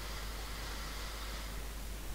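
Steady background hiss over a constant low hum, with no distinct event: the room tone of a desk microphone.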